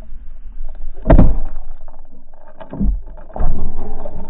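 Water churning and thudding as heard underwater while a pike strikes a lure and shakes its head with it. There are three loud surges: a big one about a second in, then two more near the end.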